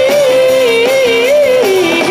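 A live band playing loudly, with a lead melody line held high and then bending and wavering down in pitch over guitars and drums.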